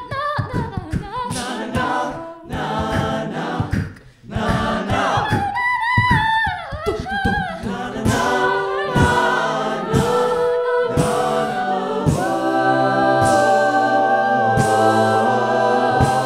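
Mixed-voice a cappella group singing with a vocal percussionist keeping the beat. The first few seconds are choppy and rhythmic, a solo line bends over the group a little later, and from about halfway the voices settle into long held chords over a steady beat.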